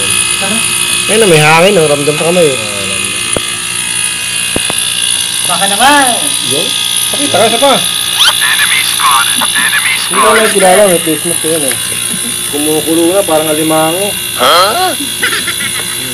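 People talking over a steady mechanical hum with high-pitched whining tones.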